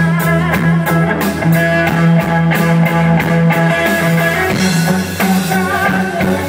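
Live rock band playing an instrumental passage: electric guitar and keyboard over sustained low notes, with a drum kit keeping a steady beat that drops away about two-thirds of the way through.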